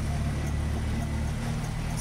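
Auto rickshaw engine running as it drives along, heard from inside the open cab with road noise. Its deep rumble thins out about one and a half seconds in.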